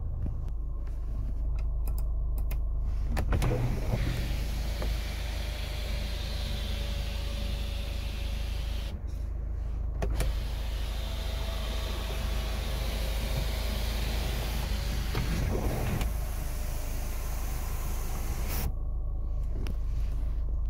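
Power sunroof motor of a 2015 Hyundai Santa Fe running in two long stretches with a short pause between: a steady electric whine with a rushing hiss that cuts off suddenly near the end.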